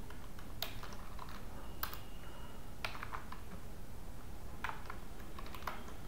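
Computer keyboard typing: separate, irregularly spaced keystroke clicks over a steady low background noise.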